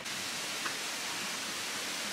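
Steady rain falling, an even hiss with no separate drops standing out.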